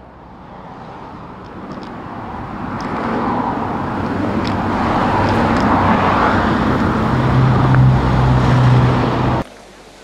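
Road traffic: a motor vehicle's noise growing steadily louder, with a low engine hum at its loudest in the last few seconds, then cut off abruptly near the end.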